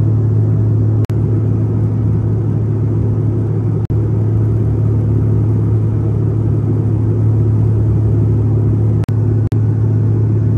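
Steady airliner cabin drone in flight: engine and airflow noise with a strong low hum. The sound cuts out for an instant about a second in, near four seconds, and twice near the end.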